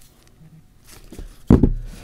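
Two cased phones being handled, then set down on a wooden tabletop with a dull thump about one and a half seconds in.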